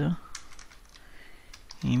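Typing on a computer keyboard: a handful of light key clicks.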